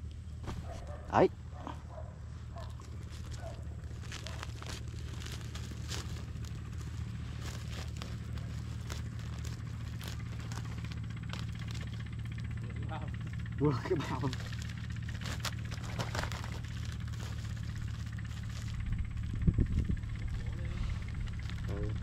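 A steady low engine hum, with a few faint clicks over it.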